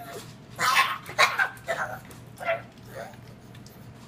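A pug making short vocal sounds, four or five in quick succession over the first two and a half seconds, as it begs for breakfast. A person laughs near the middle.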